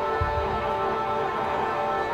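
Live band playing an instrumental passage: sustained, droning pitched tones, with a low bass hit about a quarter second in.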